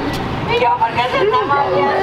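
Several people talking at once, indistinct chatter with no words made out.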